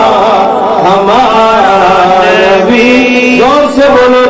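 A man's voice singing a naat, a devotional poem in praise of the Prophet, in long held melodic lines with sliding ornaments, taking a brief breath near the end.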